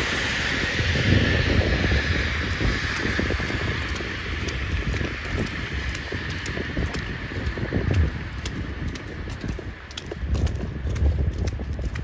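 Footsteps in fresh snow, with wind rumbling on the microphone and a steady hiss that fades away over the first few seconds.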